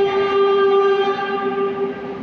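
Approaching metro train sounding its horn in one long steady note, over the rumble of the train coming into the station.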